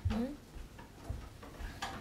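A brief rising voice sound, then a few soft, dull knocks spaced unevenly through the rest of the moment.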